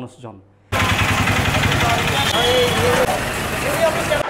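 Tata bus's diesel engine idling with a steady rumble, faint voices of people around it; it cuts in abruptly under a second in, after a man's last spoken word.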